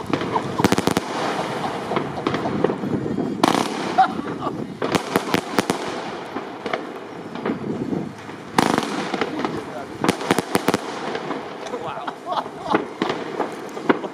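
Weco Black Widow consumer firework going off, crackling and banging in clusters of sharp cracks every second or two, with the loudest bangs about three and a half and eight and a half seconds in.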